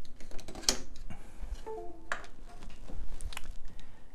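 A few sharp plastic clicks and knocks from a power plug and cable being pulled out of a USB-to-SATA adapter, with a brief faint tone just before the middle.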